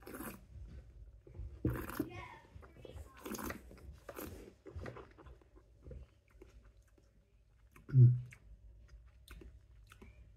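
A man sipping perry from a glass and working it around his mouth: a series of short wet slurps and swishes over the first five seconds. Near the end comes a short appreciative hummed "mm".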